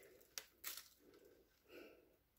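Faint, soft crackles from a monstera stem section being pulled apart at a cut joint, two short clicks early on and a soft rustle near the end, otherwise near silence.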